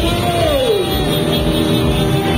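Many small motorcycle engines running and revving at low speed in a dense crowd of bikes, one engine's pitch falling as it is let off about half a second in, with music underneath.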